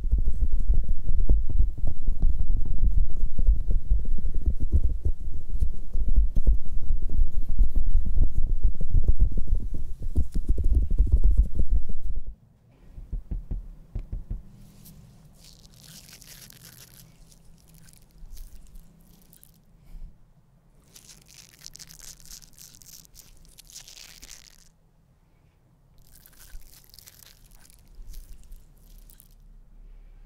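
Hands rubbing directly on the microphone for an ASMR ear trigger: a loud, dense, deep rustling that cuts off suddenly about twelve seconds in. It is followed by quieter stretches with three short soft hissing sounds.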